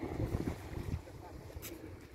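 Wind buffeting the phone's microphone in gusts, strongest in the first second, over sea water lapping below a pier. A brief hiss near the end.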